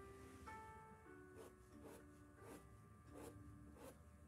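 Faint, soft background music with held notes, and a few light scratchy strokes of a paintbrush dabbing fabric paint onto linen cloth, roughly one a second.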